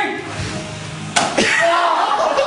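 A single sharp slap of a hand striking a person, about a second in, with voices crying out around it.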